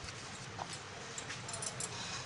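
Wooden rolling pin rolling dough thin on a wooden board: faint rolling and light knocks, with a few small clicks in the second half over a steady background hiss.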